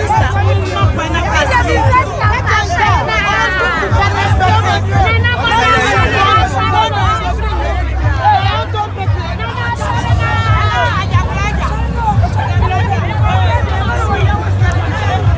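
Loud crowd of many voices shouting and calling out at once, with music and a steady low bass beneath.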